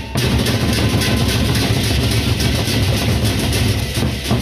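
Sasak gendang beleq ensemble playing: the large double-headed drums beaten in a loud, dense stream of low strokes, with a continuous metallic cymbal haze above them.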